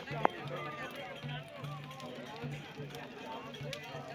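Many voices calling and singing around a large brushwood bonfire, with low beats from a chang frame drum. A single sharp, loud crack rings out about a quarter second in.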